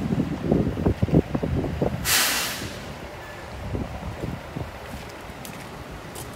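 The tilting hood of a Volvo semi-tractor being pulled forward and swung open: a run of low knocks and clunks for about two seconds, then a short hiss.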